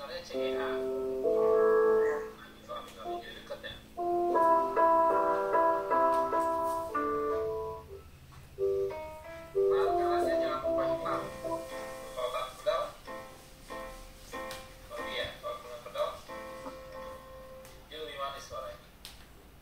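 Keyboard playing a simple tune with left-hand chords, held chords changing every second or two with short pauses between phrases. It is heard over a video call.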